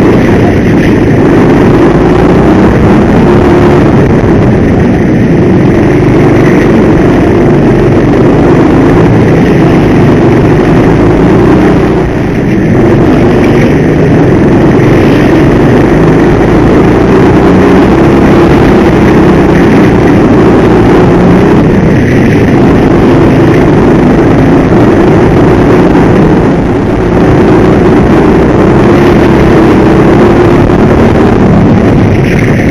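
Go-kart engine heard from onboard, loud and running hard at racing speed, its pitch wavering up and down. The sound dips briefly twice, about 12 seconds in and near the end.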